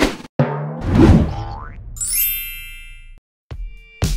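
Animated-logo sound effects: a sharp hit, a springy boing over a heavy low thud, a rising swoop, then a high shimmering chime. After a brief silence, electronic music with a regular beat starts shortly before the end.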